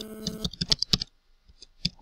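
Typing on a computer keyboard: a quick run of separate key clicks, a short pause about a second in, then a few fainter clicks.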